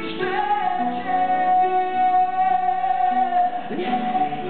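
Male singer holding one long, high sung note for about three seconds over instrumental accompaniment in a live concert performance.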